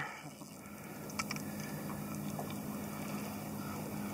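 A steady low motor hum under an even hiss of wind and water, with a faint tick about a second in.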